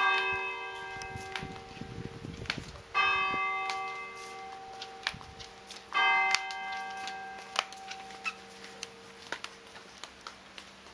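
A church tower bell tolling: three single strokes about three seconds apart, each ringing on and slowly fading. Faint light taps are scattered in between.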